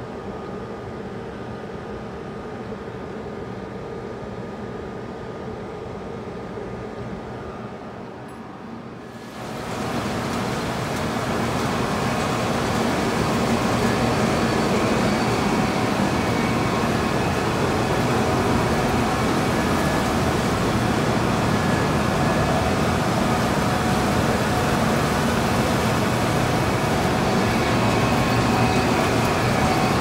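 Steady hum of the refrigeration unit serving a baggage X-ray machine. About a third of the way in it gives way suddenly to the louder, steady rushing rumble of baggage-handling conveyors and machinery.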